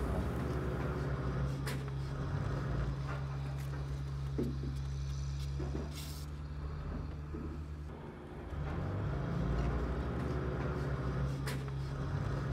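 A steady low hum from a running motor or engine, with a few faint clicks. The hum dips briefly about eight seconds in.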